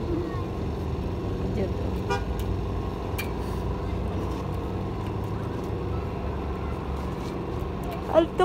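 Steady low outdoor rumble with a constant hum, like traffic or a running engine, with faint children's voices now and then.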